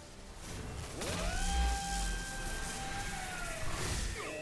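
A wolf howling in the anime's soundtrack: one long howl that rises about a second in, holds a steady pitch, and sags away near the end, over a low rumble.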